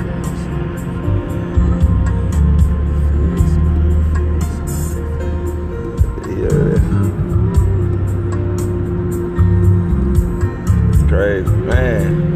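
A man singing a slow worship song, with sung phrases rising over sustained low musical tones that change every few seconds.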